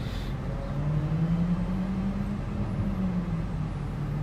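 Honda Civic's engine idling while stopped in traffic, heard from inside the cabin: a steady low hum that rises slightly in pitch about a second in and eases back near the end.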